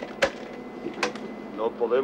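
Telephone handset put back on its hook: a sharp knock about a quarter-second in, then a lighter click about a second in.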